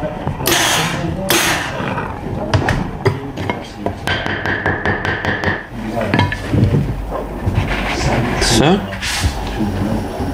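A steam iron pressing a wool cap over a wooden hat block to shape the cloth, giving bursts of hiss, with a few knocks and rubbing as the cap is handled on the block.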